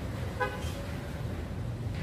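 Steady low rumble of street traffic, with one brief car horn toot about half a second in.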